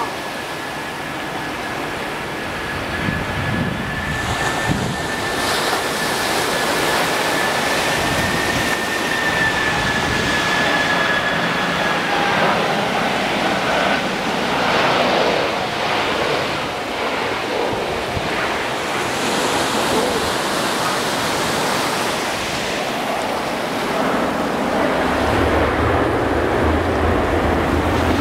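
Boeing 747-400 on final approach: the jet engines' steady rushing roar grows louder through the passage, with a thin high engine whine held for about the first twelve seconds.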